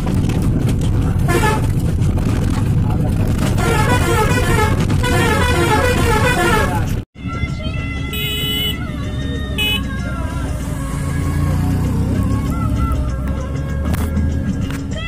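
Vehicle engine and road noise from inside a moving vehicle, with horn honking in the busy first half. After a sudden cut about halfway through, music plays over a low engine rumble.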